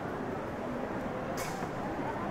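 Steady outdoor background noise with faint, indistinct voices, and a short hiss about one and a half seconds in.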